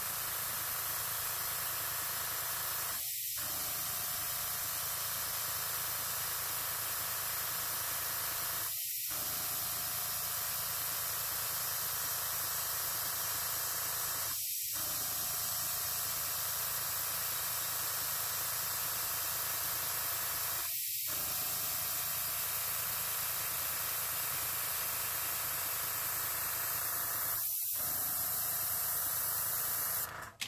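Master airbrush gun blowing a steady stream of compressed air: a continuous hiss as air is blown over wet alcohol ink on paper to push and spread it.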